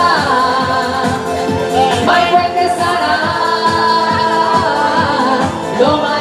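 Live pop song: a woman singing into a microphone over an electronic backing track with a steady beat.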